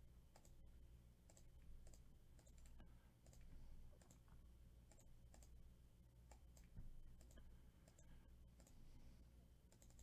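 Faint, scattered clicks of a computer mouse and keyboard over a low steady hum.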